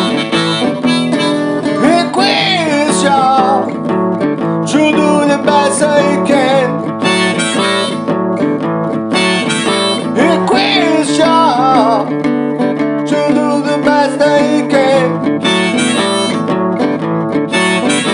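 Diatonic harmonica in D played blues in second position: rhythmic draw chords on holes 1–3 and bent, wavering notes, over a guitar backing.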